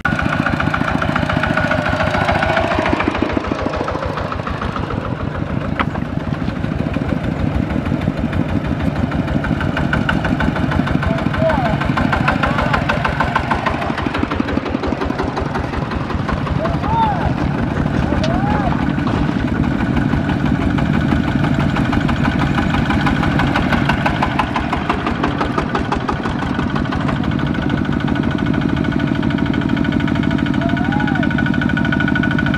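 Several Kubota ZT155 single-cylinder diesel engines on two-wheel power tillers running under load as they haul trailers along a dirt road. Their fast exhaust beats make a rapid, steady chugging.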